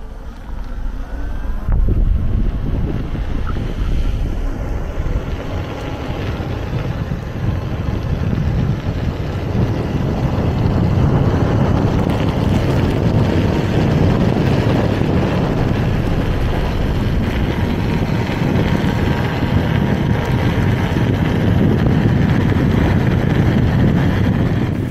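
Wind rushing over a helmet-mounted microphone while riding a Kingsong S22 electric unicycle along an asphalt road, a steady roar heaviest in the low end. It grows louder about a third of the way in, as the ride picks up speed.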